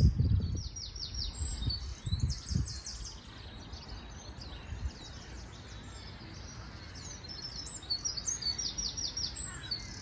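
Several songbirds singing, with short phrases of fast repeated high notes coming again and again. Low rumbling on the microphone in the first few seconds.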